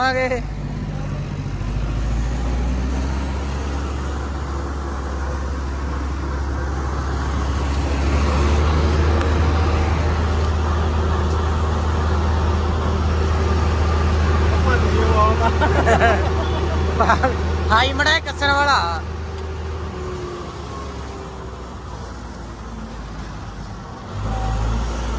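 Combine harvester's diesel engine running steadily as the machine drives along the road, a strong low drone heard from the open cab. The drone eases off about twenty seconds in.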